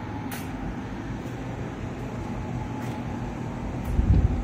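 Steady low machine hum, with a few faint ticks spaced out through it.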